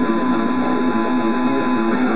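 Electric guitar, a Slammer by Hamer Explorer-style, playing a fast repeating metal riff.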